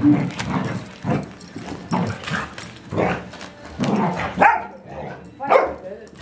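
Two dogs playing together, with a short bark or yip about once a second.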